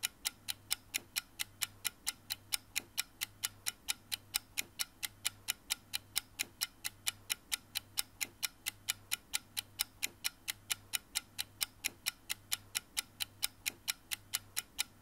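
Steady clock ticking, about four even ticks a second, over a faint low hum.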